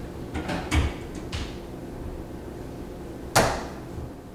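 Latch handle on an electric smoker's door being worked: a few light clicks in the first second and a half, then one louder sharp clack about three and a half seconds in as the latch snaps.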